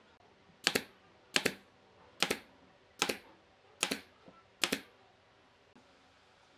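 Six sharp knocks on a wooden workpiece, evenly spaced about one every 0.8 seconds, each a quick double hit.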